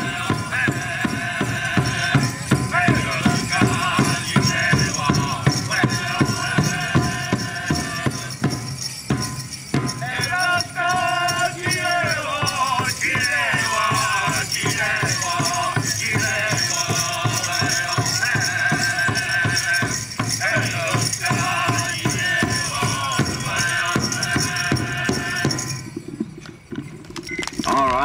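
Powwow drum struck in a steady beat under men's singing of a straight-dance song. The song stops shortly before the end.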